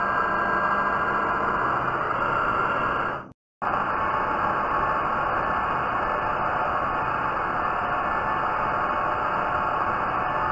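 Metal lathe running under a heavy cut in aluminium, a steady whir from the spindle and gearing mixed with the hiss of the tool cutting. The sound cuts out abruptly for a moment about a third of the way in, then carries on unchanged.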